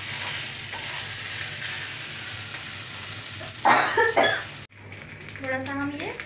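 Idli pieces sizzling as they fry in a non-stick kadai, turned with a wooden spatula. There is a brief louder burst about four seconds in, and the sizzle cuts off suddenly just before five seconds.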